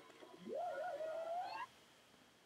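A faint voice on the soundtrack of a video clip playing in the ebook page: one long note that slides up from low and wavers, cut off suddenly about a second and a half in as the page is turned.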